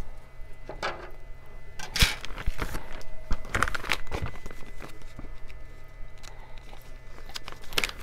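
Clear plastic zip-lock parts bags rustling and crinkling as they are handled, with scattered light clicks of small plastic parts; the sharpest click comes about two seconds in and a busier patch of rustling follows a second or two later.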